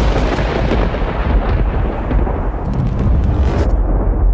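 A deep, rolling thunder-like rumble used as sound design for a programme intro. It is heavy in the bass, and its upper hiss thins out as it goes, with a few faint crackles near the end.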